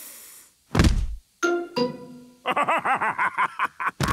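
Cartoon sound effects for smelling a very strong cheese: the end of a long hissing sniff, a quick falling swoop that lands in a low thud about a second in, and a short musical sting. From about two and a half seconds a man's hearty laughter follows.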